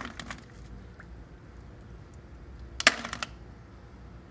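Loose, separate ice cubes clinking as a hand rummages through an ice maker's bin, with a few light clicks early and a sharper clatter of ice about three seconds in.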